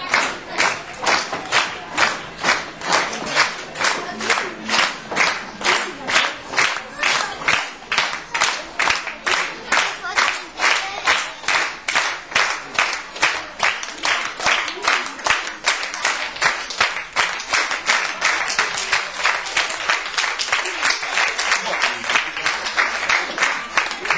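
Audience clapping in unison, a steady rhythmic applause of about two to three claps a second, the beat growing a little less crisp near the end.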